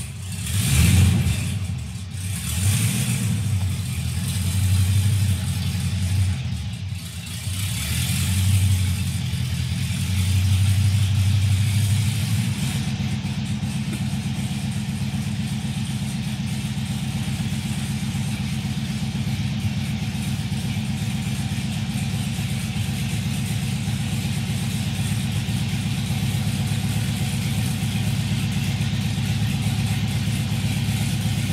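Stock GM LS1 5.7-litre V8 running on open headers just after its first start. It runs unevenly, with several surges in revs over the first dozen seconds, then settles into a steady idle.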